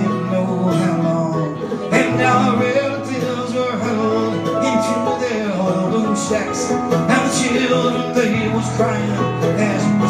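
Live folk song: a man singing at the microphone over a strummed acoustic stringed instrument.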